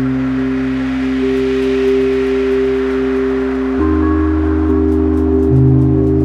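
Elektron Syntakt playing a slow, non-rhythmic piece built only from its SY Bits synth machine. Held bass and chord tones sustain, then shift to a new chord about four seconds in, with faint high ticks above.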